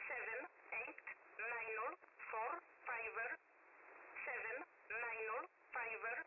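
E11 number station's voice reading single numbers in English at an even pace over shortwave radio. It is heard through a narrow receiver passband, thin and band-limited, with a hiss that rises in the gaps between words.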